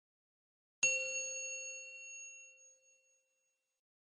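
A single bell-like chime sound effect: one bright ding about a second in, ringing on and fading away over about two seconds.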